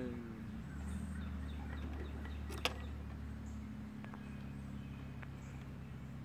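Polaris Sportsman 700 ATV engine idling steadily. A short falling voice-like call comes right at the start, and a single sharp click about two and a half seconds in.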